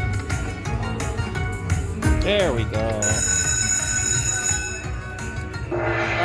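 Dragon Link Spring Festival slot machine's bonus music and sound effects during a free spin. Rapid ticking tones run as the reels spin and stop, a warbling chime sounds about two seconds in, then steady high ringing tones follow. A new burst of effects comes near the end as a fireball value lands.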